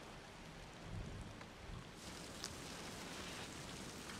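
Faint steady hiss of rain-like ambience, with a small soft tick about two and a half seconds in.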